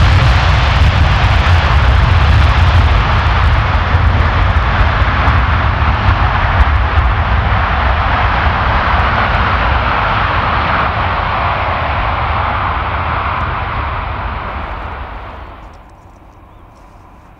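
Jet airliner's engines running at high power on a wet runway, a loud, steady rush of engine noise and spray. It slowly fades over the last few seconds and drops away sharply at the end.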